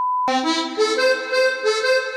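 A steady test-tone beep, the kind played with TV colour bars, cuts off about a quarter second in. A short musical interlude follows: several held notes sounding together and stepping in pitch.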